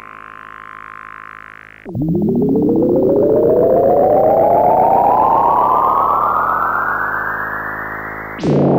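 Electronic synthesizer music: a steady layered drone, then about two seconds in a louder, rich synth tone that glides slowly and steadily upward in pitch through the rest.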